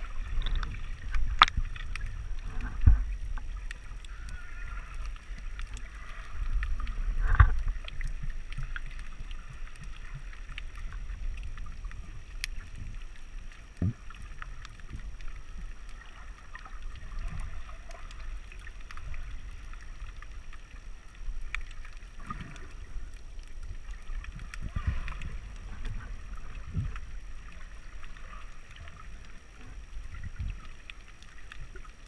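Muffled underwater noise picked up through a waterproof action-camera housing: a continuous low rumble of moving water with scattered small clicks and a few louder thumps, the strongest about a second and a half, three and seven and a half seconds in.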